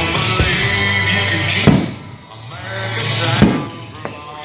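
Two firework shells bursting with sharp booms about a second and a half apart, the second one louder, over rock-style music with singing.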